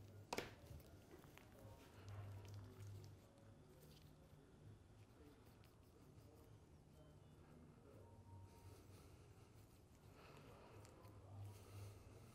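Near silence: quiet room tone with a faint low hum that comes and goes, and one sharp click about half a second in.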